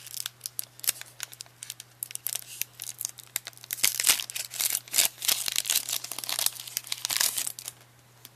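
A trading-card booster pack wrapper being torn open by hand and crinkling: a dense run of sharp crackles that stops near the end.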